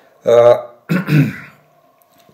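A man's voice: two short voiced sounds about half a second apart, a hesitation or throat clearing between sentences rather than clear words.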